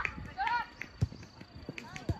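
Short high-pitched shouts from players on a soccer pitch, with a few dull thumps from running feet and the ball on the turf.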